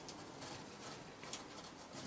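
Faint soft cooing calls from raccoon kits huddled against their mother, with a few light rustling clicks.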